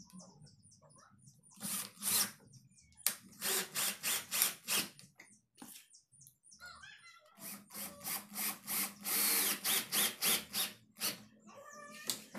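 Cordless drill with a long screwdriver bit driving screws through a door lock's faceplate into the wooden door edge, run in repeated short bursts: two about two seconds in, a quick run around three to five seconds, and a longer run from about seven and a half to eleven seconds.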